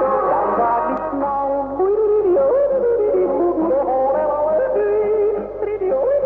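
Tyrolean-style folk music played by an East German numbers station, heard over the radio: thin and band-limited, with a melody line moving up and down.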